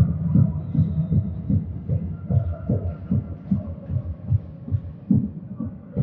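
Dull, uneven low thumps, several a second, echoing in a sports hall; they are loudest at first and ease off.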